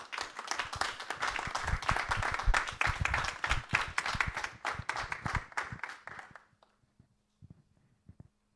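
A small audience applauding, individual claps distinct, thinning out and stopping about six seconds in, with a few faint taps after.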